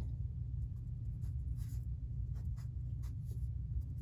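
Fine-point wet-erase marker (Vis-à-Vis) drawing on paper, a series of short strokes as a line and label are drawn, over a steady low hum.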